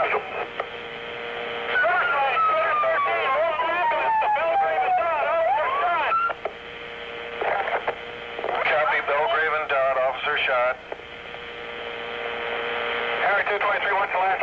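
Recorded police two-way radio traffic: garbled, unintelligible voices in short transmissions. A steady hum tone fills the pauses, and a thin whistle falls slowly in pitch behind the first transmission.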